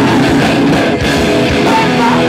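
Live punk rock band playing loud and fast: distorted electric guitar and pounding drums, with the singer shouting into the microphone.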